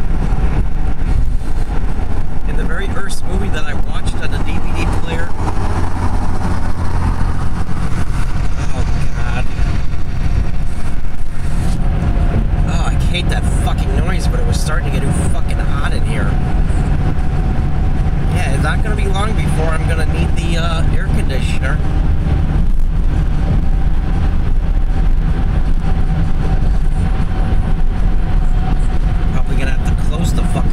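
Car cabin noise at freeway speed: a steady low rumble of tyres and engine that shifts in tone about eleven seconds in, with indistinct speech coming and going over it.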